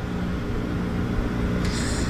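A steady low engine rumble with a constant hum, as from a motor idling close by.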